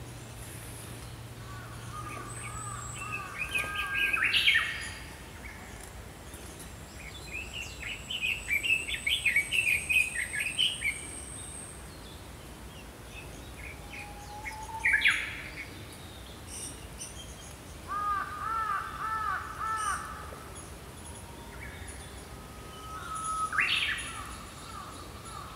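Small songbirds singing and calling in short separate phrases, including fast runs of chirps and a series of repeated looping notes. A thin, high, steady tone runs through the first half.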